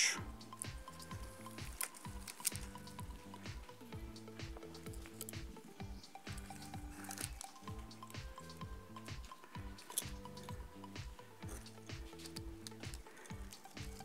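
Soft background music with a steady pulsing bass and held tones. Over it come faint scattered clicks and rustles of pine cones and conifer sprigs being handled and pushed into a floral arrangement.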